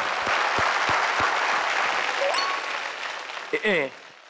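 Applause breaking out at once and dying away over about three seconds, marking a correct answer in a guessing game. A short spoken word comes near the end.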